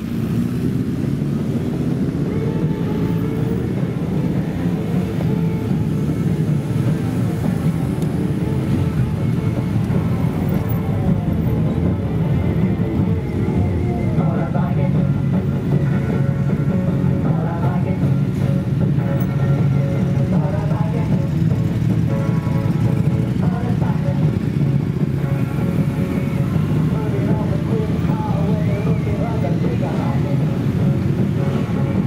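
Many motorcycle engines running at low revs as a procession of bikes rides slowly past, a steady blend of overlapping engine notes.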